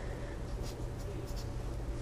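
Faint strokes of a felt-tip marker writing on paper, over a low steady hum.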